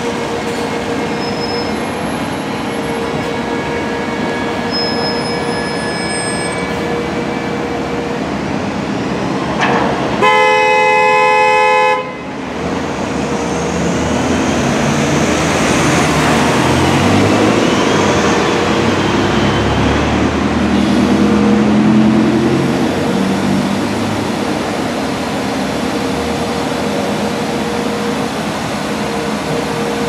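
Street traffic with a city bus running close by and driving past, swelling and fading through the middle. About a third of the way in, a vehicle horn sounds once for about two seconds.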